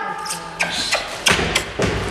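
Three dull thumps about half a second apart, with music fading out in the first half second.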